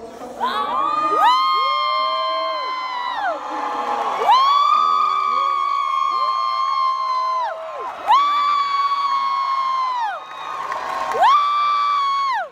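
Excited cheering voices whooping in four long, high-pitched held screams, each rising at the start and dropping away at the end, over a cheering crowd.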